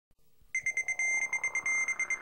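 A high electronic ringing tone comes in about half a second in after silence. It pulses rapidly, about ten times a second, broken by a couple of short steady stretches, like an alarm or an electric bell.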